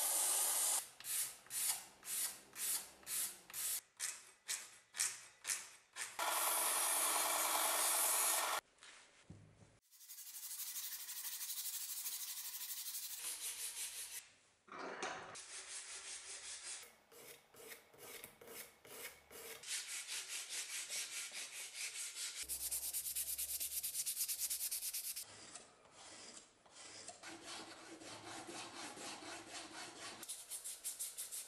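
Wooden ash knife handle being shaped: a bench disc sander runs with the wood pressed against it for a few seconds at a time, alternating with stretches of hand sanding and filing, rhythmic rubbing strokes about two a second at first and quicker later.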